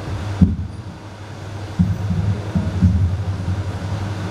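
Handheld microphone being handled, giving a low rumble and a few dull thumps over a steady low hum through the sound system.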